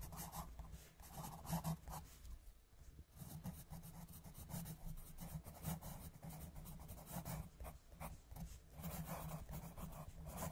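Colored pencil scratching on paper in rapid back-and-forth coloring strokes, faint and continuous, with a brief lull between two and three seconds in.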